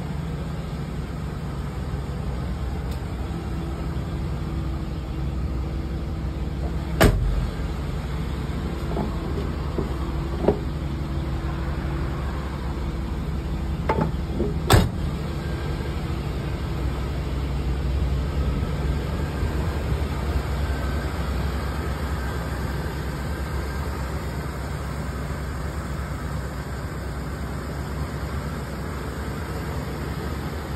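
Box-body Chevrolet Caprice engine idling steadily, with two sharp knocks about eight seconds apart.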